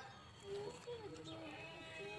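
Goat kid bleating, a wavering call that starts about half a second in and lasts about a second.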